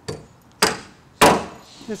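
Hand hammer driving a nail into the wooden double top plate of a framed wall: three sharp blows, evenly spaced about half a second apart, each louder than the one before.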